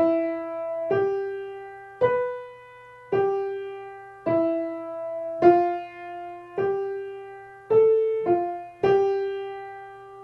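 Piano playing the four-measure melody of an ear-training exercise: struck notes at a slow, even pace of about one a second, each fading as it rings, with two quicker notes near the end and the last note held.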